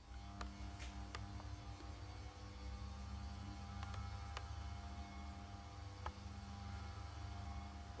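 Low steady electrical-type hum of a room's ambience, with a few faint clicks scattered through it.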